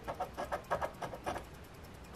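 A black round scratcher tool is rubbed rapidly back and forth over the latex coating of a scratch-off lottery ticket, about eight quick scraping strokes a second. The scraping stops about one and a half seconds in.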